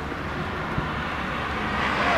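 A car approaching on the road, its tyre and engine noise growing steadily louder.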